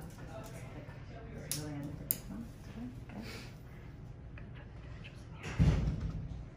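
Faint, indistinct talking in a small room, with a sharp click about two seconds in and a loud dull thump or rustle near the end.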